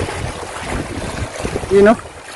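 Steady wind noise on the microphone over small sea waves washing against shore rocks. A short, loud spoken exclamation comes near the end.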